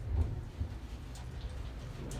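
Low steady rumble inside a closed 1972 Otis traction elevator car standing at the first floor, with one soft bump about a quarter of a second in.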